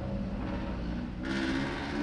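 Steady low background hum. A little over a second in, a steady hiss joins it.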